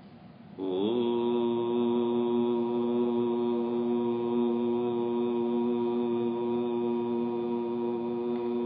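A man's voice chanting one long held note. It starts about half a second in with a slight upward slide in pitch, then stays steady.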